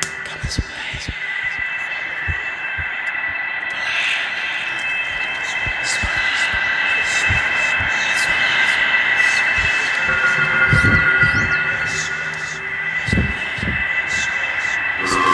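Film soundtrack: a steady high-pitched drone made of several held tones, with short low thumps at irregular intervals underneath.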